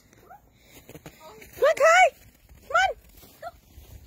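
Corgi barking: three loud, short, high yips in the middle, two close together and then a third, with a fainter one near the end.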